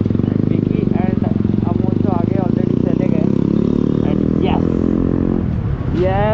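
Suzuki Gixxer 155's single-cylinder engine running in low-speed traffic, its pitch rising and falling with the throttle. The engine eases off near the end as the bike slows.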